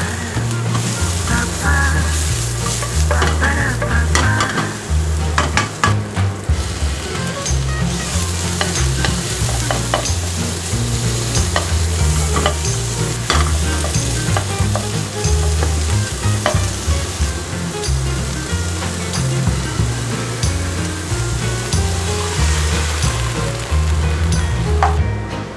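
Vegetables and thin pork slices sizzling as they are stir-fried in a nonstick pan, with a wooden spatula repeatedly scraping and clicking against the pan. Low background tones step from note to note underneath.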